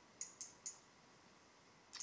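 A spinning reel being handled and turned in the hand gives three quick, light clicks in a row, then one more near the end.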